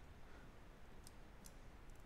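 Near silence, with a few faint clicks of a computer mouse in the second half.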